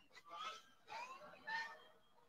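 Three short, faint gliding tones about half a second apart, from the soundtrack of an animated film.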